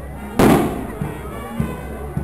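A single sharp firecracker bang about half a second in, the loudest sound, with a brief ringing tail. Under it, procession music with a steady drumbeat and voices.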